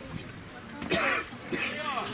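People's voices nearby, with a loud vocal burst about a second in and a short falling call near the end.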